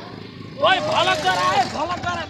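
Loud, high-pitched shouting voices that start about half a second in, over a low outdoor background noise.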